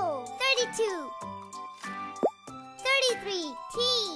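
A high, child-like voice speaking in short phrases over bright children's backing music. A short rising pop sound effect comes about two seconds in.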